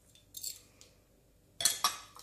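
Pieces of a broken glass candle jar clinking against each other as they are handled. There is one faint clink about a third of a second in, then a louder cluster of clinks near the end.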